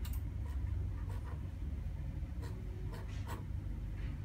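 A few light, sharp clicks of fingertip taps on a smartphone touchscreen, spaced irregularly over a steady low background hum.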